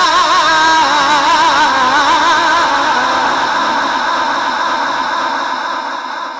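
A qari's voice reciting the Quran in a long, melismatic held note with a wide, quick vibrato, amplified through a microphone, slowly fading toward the end.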